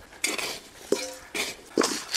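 Potatoes and a hand tool knocking against a stainless steel bowl as the bowl is handled and set down: about five short clanks, one about a second in ringing briefly like struck metal.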